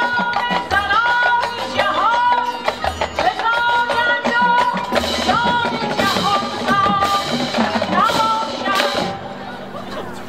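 Marching band field-show music: a melodic lead line whose notes slide up into pitch, over percussion. It thins out about nine seconds in.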